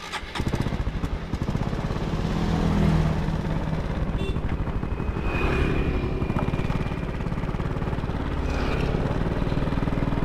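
A motor scooter's small engine starting up just after the opening, then rising in pitch as it pulls away and running steadily under way.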